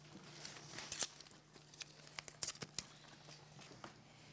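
Scattered paper rustles and light taps as magazine cutouts are handled and pressed onto a glued collage canvas, sharpest about a second in and again around two and a half seconds in, over a low steady hum.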